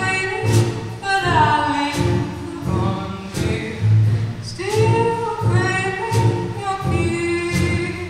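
A live small band playing a song: vocals with held, sliding notes over a steady line of upright bass notes, with drums and acoustic guitar.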